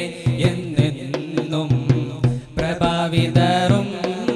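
A group of voices singing a Malayalam devotional song, with a steady beat of sharp percussive strikes under the singing.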